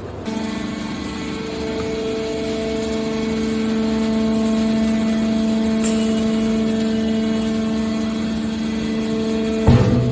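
Hydraulic scrap metal baler's power unit running with a steady hum, joined near the end by a loud clank.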